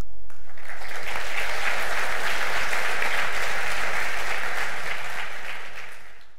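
A large audience applauding. The clapping builds within the first second and fades out near the end.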